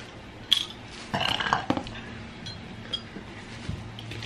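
A person burps for about half a second after drinking carbonated Ramune marble soda. There is a sharp clink about half a second before the burp, and a few faint clicks after it.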